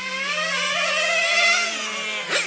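Small nitro glow engine of an Xray NT1 radio-controlled touring car running at high revs, its high-pitched whine rising and falling in pitch with the throttle.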